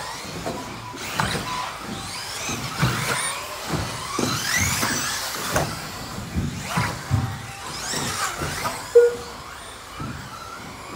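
Electric 4WD modified-class RC buggies racing: their brushless motors whine up and down in pitch as they accelerate and slow, with scattered clacks as the cars land jumps and hit the track. A short, loud beep about nine seconds in.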